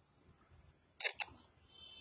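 Two sharp clicks close together about a second in, amid near silence, followed by a faint high tone.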